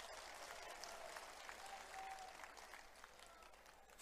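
Faint, distant crowd applause picked up by the stage microphone, dying away about three seconds in.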